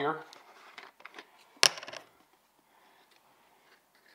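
A plastic rubbing-alcohol bottle being handled and its screw cap taken off: a few faint ticks, then one sharp click about one and a half seconds in.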